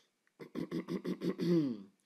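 A man's voice making a quick, wordless run of short pulses, several a second, that ends in a longer falling tone.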